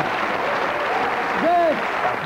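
Studio audience applauding steadily, with a voice heard over the clapping in the second half.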